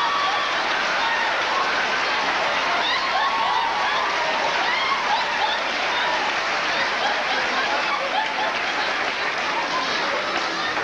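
Theatre audience laughing and applauding, a steady wash of clapping with many voices laughing through it.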